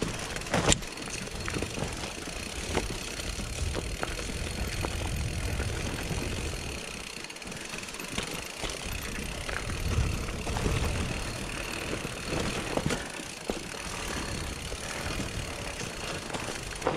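Mountain bike riding down a narrow dirt singletrack: tyres rolling over dirt and rock under a steady low rumble, with scattered clicks and knocks from the bike rattling over the bumps.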